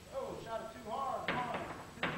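A man's voice, then sharp clicks of billiard balls striking each other about a second and a half in, as balls balanced on beer bottles are knocked off.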